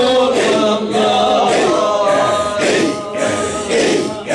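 A group of men chanting a Sufi hadra dhikr together, a sung unaccompanied melody with a steady pulse about twice a second.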